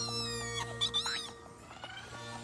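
A cartoon character's high-pitched squealing, two short gliding calls in the first second, over background music that carries on after.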